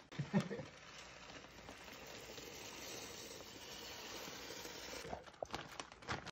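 Dry brown rice poured from a bag into a stainless pot of water: a steady hiss of grains streaming in, with a patter of clicks and rattles near the end.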